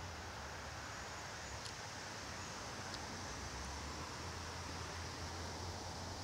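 Faint, steady outdoor background noise with a low hum and a few faint ticks.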